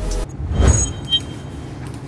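The background electronic music breaks off with a sharp click, then a swelling whoosh of a transition sound effect rises and falls, followed by a brief high ping.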